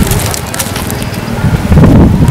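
Crackling and snapping of dry plant debris, like banana leaves and stalks being trodden or handled, followed about a second and a half in by a loud low rumble.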